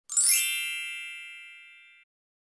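A shimmering chime sound effect: a quick cascade of high tinkling notes sweeping downward, then a cluster of bell-like tones that ring on and fade away over about two seconds.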